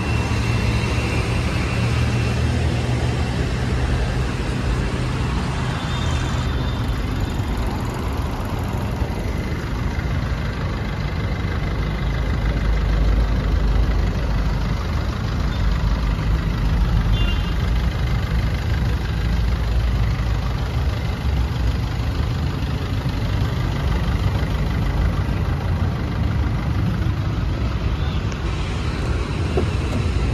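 Steady low rumble of road traffic and vehicle engines, with no single distinct event standing out.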